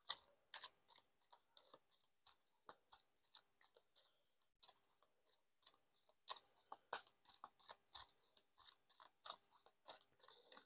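A tarot deck being shuffled by hand: faint, irregular papery clicks and slides of cards, a little busier in the second half.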